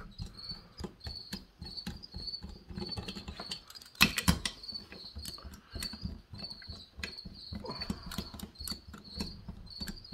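Light clicks and knocks of screws being turned down by hand on a chainsaw engine block, with one louder knock about four seconds in. A steady high chirp repeats a couple of times a second throughout.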